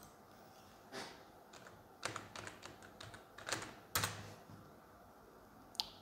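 Faint, irregular clicks and light taps: one about a second in, a quick cluster of several around two seconds in, the strongest about four seconds in, and a last sharp click near the end.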